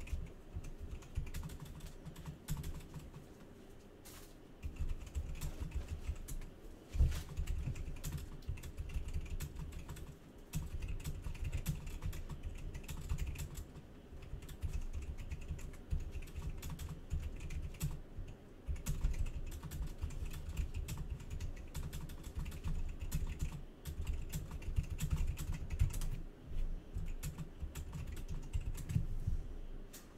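Typing on a computer keyboard: irregular runs of clicks and taps with short pauses, and one louder knock about seven seconds in.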